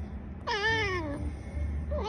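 A domestic cat meowing once: a single drawn-out meow beginning about half a second in, its pitch sliding downward as it fades.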